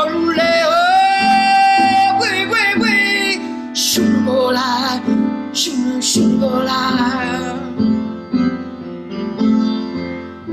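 A woman singing solo with vibrato, holding one long note about a second in, over a steady instrumental accompaniment.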